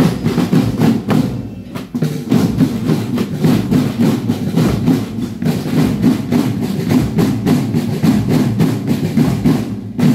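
Marching drum band of snare, tenor and bass drums playing a fast, driving rhythm together, with a brief drop in loudness just before two seconds in.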